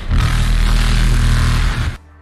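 An edited-in noise sound effect: a loud, steady burst of rumbling, static-like noise that cuts off abruptly near the end.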